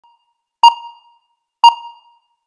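Countdown-leader beeps: two identical short electronic pings about a second apart, each starting sharply and ringing out briefly.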